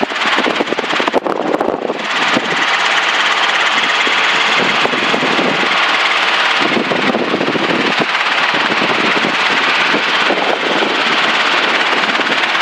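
Steady engine and rotor noise of a small Robinson helicopter in cruise flight, heard from inside the cockpit. The noise is uneven for the first two seconds, then settles louder and very even from about two seconds in.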